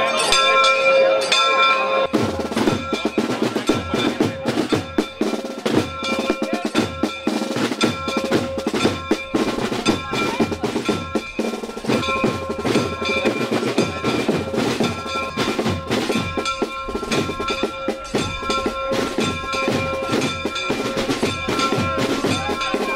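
A bell rings with steady tones, and about two seconds in a procession band's snare and bass drums start playing, with rolls, over it.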